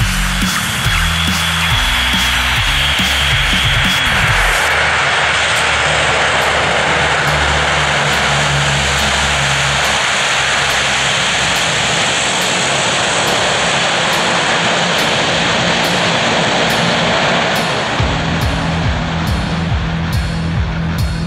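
The four turboprop engines of a Lockheed C-130 Hercules running at take-off power, a steady, loud engine noise, with background music mixed over it.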